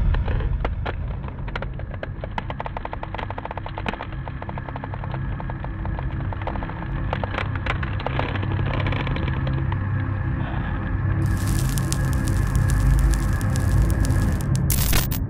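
Dark horror-style intro music over a low rumble, scattered with crackles and clicks, breaking into a loud rush of noise about eleven seconds in.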